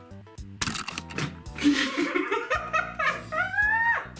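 Women laughing loudly, with a high rising squeal near the end, over background music.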